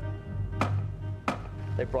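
Two sharp chopping strokes, about two-thirds of a second apart, as a hand hewing tool bites into a timber beam.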